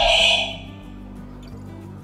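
The word "halo" coming back with a delay out of the phone's speaker, relayed from the V380 bulb camera's microphone during a microphone test, in the first half-second. Steady background music carries on underneath.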